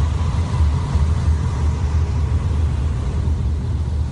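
Deep, steady rumbling drone from the documentary's soundtrack, with a faint thin high tone held above it.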